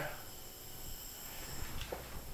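Quiet room tone: a faint steady hiss and low hum with a thin high whine, in a pause between spoken words.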